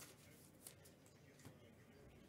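Near silence: room tone, with two faint clicks.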